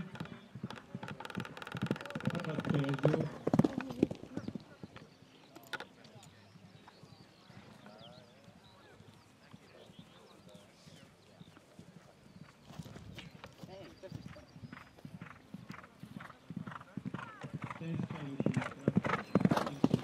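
Horse's hooves beating on a grass track, loud in the first few seconds as a horse canters past, then fading, and growing again near the end as another horse approaches. A horse whinnies, drawn out, about a second in.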